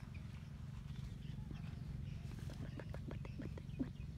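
Baby macaque sucking and chewing on its fingers, making a run of short, wet clicking mouth sounds at about four a second from about a second and a half in, over a steady low rumble.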